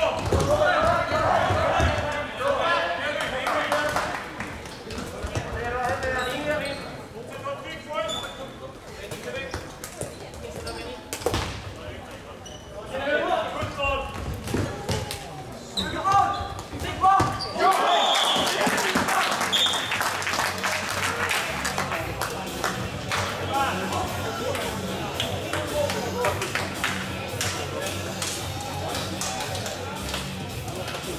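Floorball play: players shouting and calling, with frequent sharp clicks of sticks striking the plastic ball. A bit over halfway through, this gives way to steadier hall noise with music playing.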